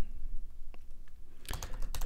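Computer keyboard typing: one lone key click a little before the middle, then a quick run of keystrokes in the last half second.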